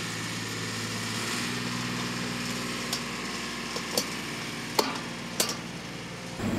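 An engine idling steadily, with four sharp metallic clicks in the second half as the bolt and padlock on a steel pad-mounted transformer cabinet are fastened.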